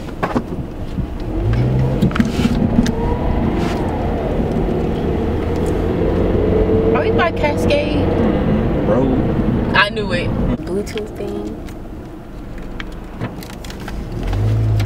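Engine and road noise heard from inside a moving Scion car: a steady low rumble, with the engine note slowly rising and falling in the first half.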